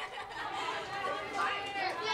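Many children talking at once, a dense overlapping chatter of young voices with no single voice standing out.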